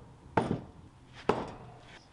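Cedar boards knocking against each other and the mill as they are handled by hand: two sharp wooden knocks about a second apart.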